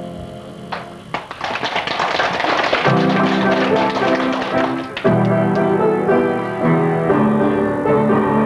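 Clapping from about a second in, with upright piano chords coming in under it near the middle. The clapping stops about five seconds in, and the piano goes on with sustained chords.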